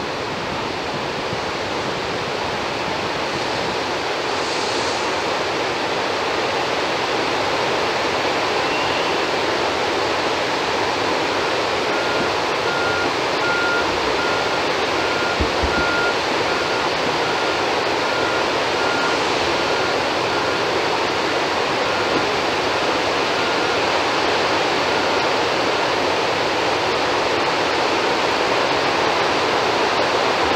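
Water pouring through the open spillway gates of the Afobaka Dam, a steady rush that slowly grows louder, as the surplus water of an overfull reservoir is released into the river.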